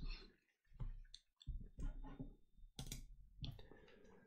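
Faint, scattered small clicks and taps, about ten of them at irregular intervals, with near silence in between.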